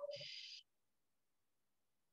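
Near silence: a brief hiss with a thin high tone that cuts off abruptly about half a second in, then dead silence.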